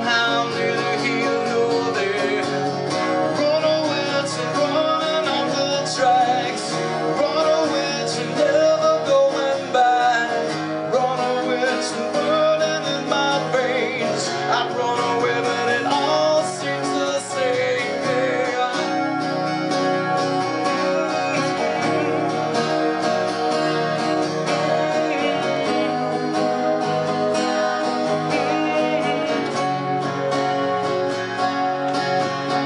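Acoustic guitar strummed in a steady rhythm, with a man singing over it through the microphone for roughly the first half; after that the guitar carries on mostly alone.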